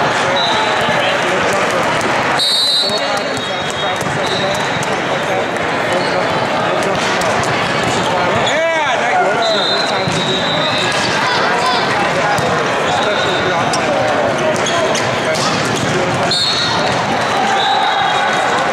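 Busy indoor volleyball hall: a continuous babble of many voices, with sneakers squeaking on the sports-court floor now and then and sharp slaps of volleyballs being struck and bouncing.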